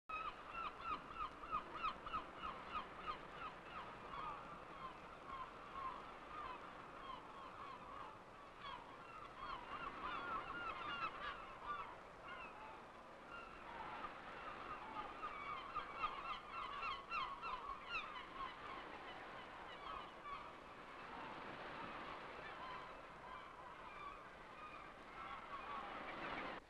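A flock of birds calling: many short, overlapping pitched calls, densest in the first half and thinning out into a steady background hiss near the end.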